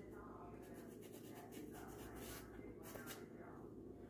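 Faint, crisp scratching of a chef's knife cutting around the top of a bell pepper on a cutting board, in a few short irregular strokes over a low steady hum.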